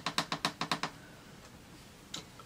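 A quick, even run of about eight sharp plastic clicks in under a second, then a quiet room: a ring light's brightness control being clicked up.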